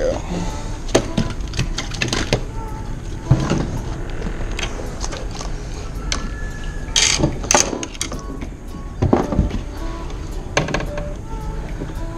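Scattered knocks and clicks of a freshly caught mangrove snapper being swung aboard a plastic fishing kayak and handled for unhooking, over a steady low background.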